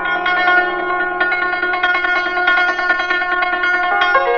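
Traditional Persian classical music in the mode Bayat-e Esfahan: a stringed instrument plays quick repeated notes that ring on and overlap, over a steady low drone.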